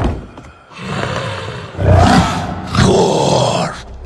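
Orc growls and roars in a fantasy-film fight scene: a brief lull, then two long, loud roaring growls from about two seconds in.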